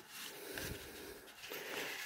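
Faint rustling and rubbing of a cardboard box being handled.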